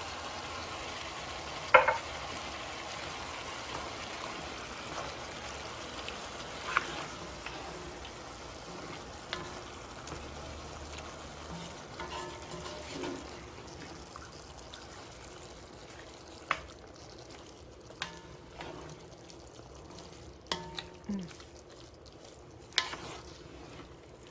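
Green beans and chopped tomatoes sizzling and simmering in a hot cast-iron pan, stirred with a wooden spoon. A few sharp knocks of the spoon against the pan break the steady sizzle, the loudest about two seconds in.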